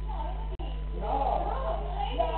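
Several people talking indistinctly in a room, picked up by a security camera's low-quality microphone with a steady electrical hum; about a second in, a louder high-pitched voice rises and falls.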